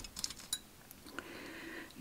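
Faint small metallic clicks and one brief ringing clink about half a second in, from fly-tying scissors being handled just after a trim at the vise, followed by a soft rustle.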